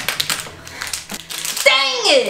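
Quick clicking and tapping of a tiny cardboard miniature toy box being fiddled with and pried at by fingernails, the item inside stuck and hard to get out. A short vocal sound from the person comes near the end.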